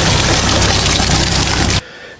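Oil gushing from a truck's discharge outlet onto a gravel road: a loud, steady rush over the low hum of the truck's running engine. It cuts off about two seconds in.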